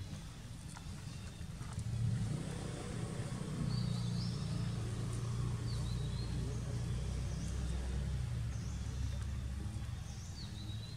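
Low, steady engine rumble of a motor vehicle, swelling about two seconds in and easing off near the end, with a bird chirping several times over it.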